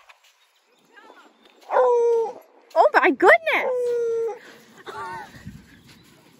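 A dog giving howl-like vocal calls: a held note about two seconds in, then a wavering call that settles into another long held note, with fainter calls after.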